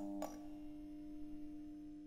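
Neon-sign sound effect: a click as the tubes flicker on, then a steady low electrical hum of a couple of tones that slowly fades.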